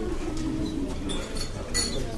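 A single sharp clack of billiard balls striking, with a brief ring, near the end, over a low murmur of voices.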